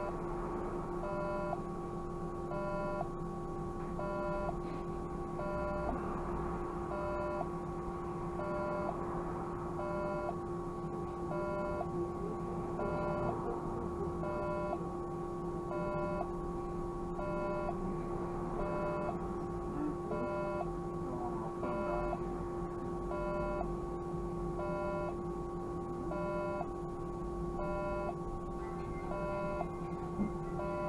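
Inside the cab of a stationary Škoda 30Tr SOR trolleybus: a steady electrical hum with a short electronic beep repeating about once a second.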